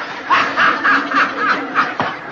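A man laughing in a quick run of short giggles, about seven in a row.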